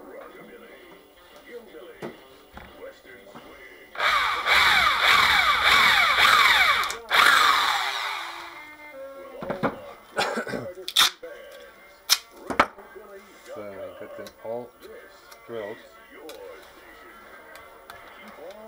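Electric drill running for about four seconds, with a brief break near the end, boring a hole through the plastic lid of a maintenance-free car battery. A few sharp knocks follow.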